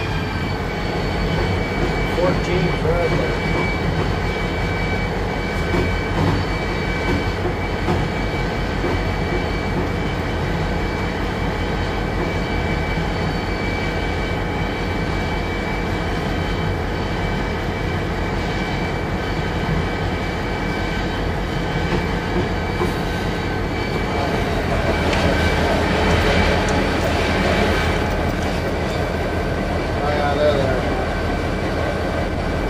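Cab sound of an EMD SD40-2 freight locomotive under way: the 16-cylinder two-stroke diesel drones steadily, with a high steady whine over it and the rumble of wheels on rail. It grows somewhat louder and rougher about three quarters of the way through.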